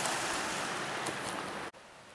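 Steady hiss of running water from a spring inside a small rock cave, with a faint tick or two. It cuts off suddenly shortly before the end.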